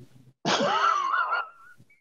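A person's high, breathy laugh, about a second long, its pitch rising and then wavering.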